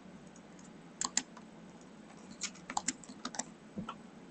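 Keystrokes on a computer keyboard: two clicks about a second in, then a quicker run of taps through the second half.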